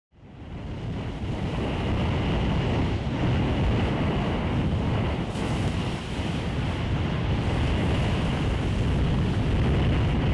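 Steady rushing noise of wind and surf, fading in over the first couple of seconds.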